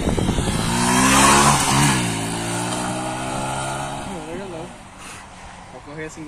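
Honda Fan 125's single-cylinder pushrod engine revving up as the motorcycle accelerates away, its pitch climbing and briefly dipping about two seconds in. It then holds a steady note as it fades into the distance.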